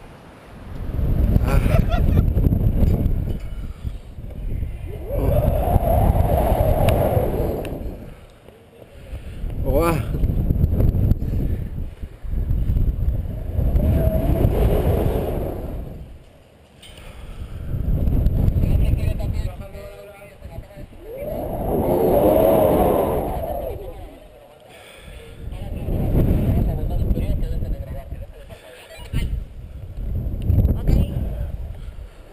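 Wind rushing over the microphone of a camera worn by a jumper swinging on a puenting rope. It swells and fades about every four seconds as he swings to and fro.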